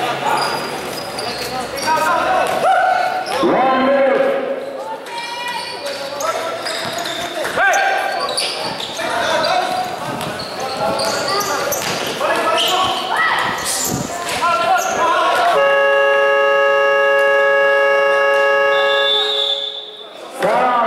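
Basketball game sounds in a gym: a ball dribbling and players' and onlookers' voices. About fifteen and a half seconds in, the gym's buzzer sounds one long, steady tone lasting about four and a half seconds, louder than the play around it.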